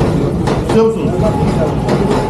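Indistinct voices of several people talking around a market counter over a steady background din of a busy hall.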